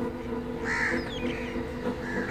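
A crow caws once, a short harsh call a little under a second in, followed by a few faint high bird chirps. A steady low hum runs underneath.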